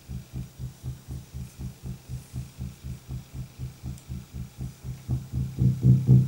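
Roland JD-XA synthesizer running an arpeggiator patch: a repeating low bass pulse, about four notes a second, faint at first and swelling louder in the last second or so.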